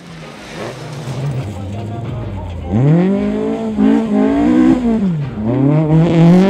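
Subaru Impreza rally car's flat-four engine running hard on a dirt stage. About three seconds in it revs up sharply and gets much louder, then it dips once and climbs again near the end.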